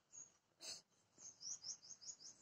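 Faint bird chirps in near silence: a couple of single high chirps, then a quick run of about four chirps a second near the end.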